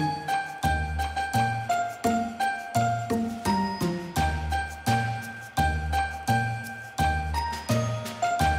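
Instrumental background music: tinkling, bell-like notes in a steady rhythm over a repeating bass note.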